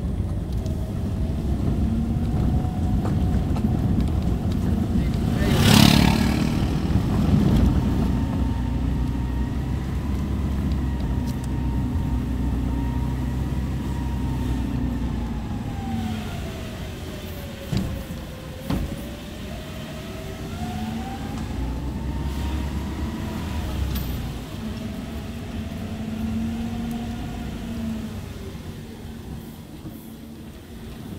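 Car engine and road noise heard from inside the cabin while driving slowly on a rough village lane, with a whine that rises and falls with speed. About six seconds in there is a loud brief rush as an oncoming motorcycle passes close, and a little past halfway there are two sharp knocks from bumps in the road.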